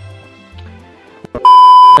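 Quiet background music, then about a second and a half in, a loud, steady electronic beep of one pitch that lasts about half a second and cuts off sharply.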